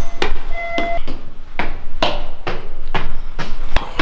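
Footsteps climbing a flight of stairs, about two steps a second, heard throughout. A short electronic beep sounds about half a second in.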